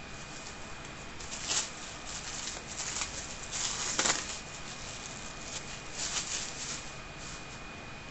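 Thin plastic bag crinkling and rustling as it is handled, in several short bursts, the loudest about four seconds in, while the clay is taken out of it.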